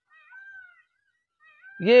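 A few faint, short, high animal cries, each rising and then falling in pitch, in a pause between words.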